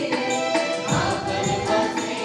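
Live band music in a Sadri song: an electronic keyboard holding sustained chords, with guitar and drum beats.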